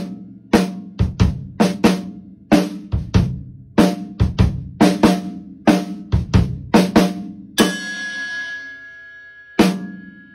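Acoustic drum kit playing a fill of snare and kick-drum strokes in a tight grouped pattern. About 7.5 s in it ends on a snare hit together with a struck cymbal bell that rings out for about two seconds, then the strokes start up again near the end.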